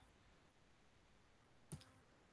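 Near silence with a single short click near the end.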